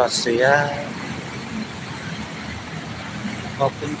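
Steady road traffic on a busy multi-lane city street: a continuous rush of passing cars and a city bus, with a low rumble underneath.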